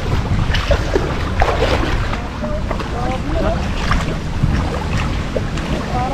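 Muddy shallow water sloshing and splashing as a person wades and gropes with his hands in it, under a steady wind rumble on the microphone. Faint voices in the background.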